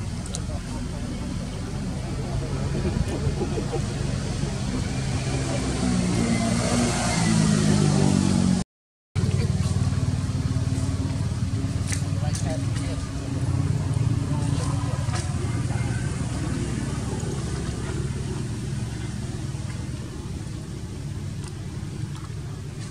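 A motor vehicle engine running, its pitch rising from about six seconds in as it speeds up, broken off by a brief gap of silence just before the middle before the running continues; voices are heard faintly.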